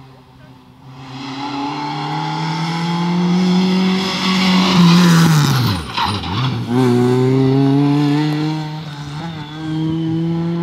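A historic rally car's engine approaches at high revs and grows louder. About halfway through the revs fall sharply as the car slows into the bend. The engine then pulls away hard with the revs climbing again and a gear change near the end.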